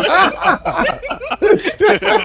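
Several people laughing together in quick, repeated bursts.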